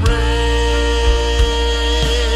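Live worship band music: a singer holds one long note over grand piano, bass and drums.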